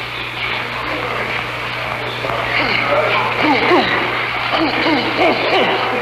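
A steady low hum under a hiss, with indistinct overlapping voice-like sounds coming in from about halfway through.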